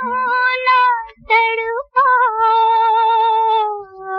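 Opening of a 1950s Hindi film song: a high, wavering melody line of long held notes in three phrases, with short breaks about a second and two seconds in.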